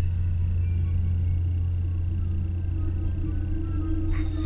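Horror-film soundtrack: a low, steady rumbling drone with a faint thin high tone held above it.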